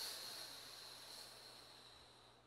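A long breath blown out through the mouth, a breathy hiss tapering away as the exhale of a slow calming breathing exercise runs out.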